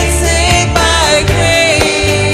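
Christian worship song: a voice singing a melody over band accompaniment with sustained bass notes and a steady beat.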